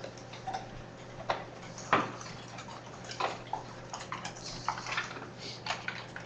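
Scattered, irregular clicks and taps of computer keyboard typing and handling, over a steady low hum.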